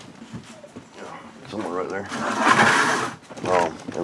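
Low, indistinct talking, with a short noisy rustle about two seconds in.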